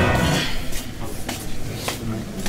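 Background music fading out in the first half second, then the room sound of an indoor corridor with three short, sharp clicks spread through the rest.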